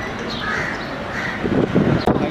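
Crows cawing twice, less than a second apart, over steady outdoor background noise, with a louder low rumble of noise near the end.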